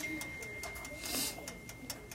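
Faint ticking of a Hamilton Beach toaster oven's wind-up timer counting down while the oven heats, with a thin steady high-pitched whine that stops shortly before the end.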